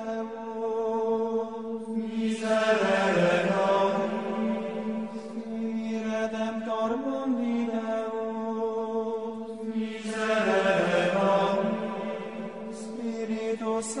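Background music: a slow chant over a sustained drone, swelling fuller about two seconds in and again about ten seconds in.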